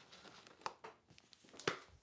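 A few faint knocks and rustles in a quiet small room, from a person moving about and handling things; the loudest knock comes near the end.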